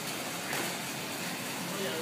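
Airdyne fan bike's fan wheel whooshing steadily as it is pedaled.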